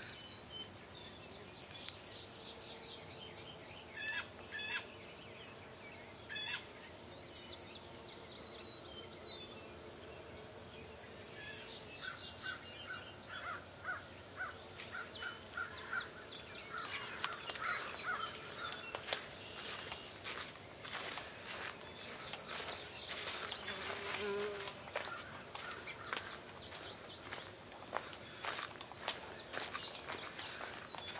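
A steady, high-pitched drone of insects calling, with scattered short bird chirps and a quick trill. From about halfway on, footsteps crunch and click on dry leaf litter.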